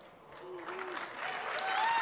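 Audience applause, rising from near silence to a steady level over the first second and a half.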